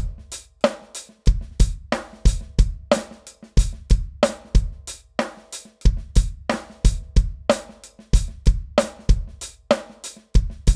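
Drum kit playing a 7/8 groove of hi-hat, snare and bass drum in even strokes about three a second. Every quarter note is accented, and in the second bar the accents move onto the offbeats, an 'overriding' pattern.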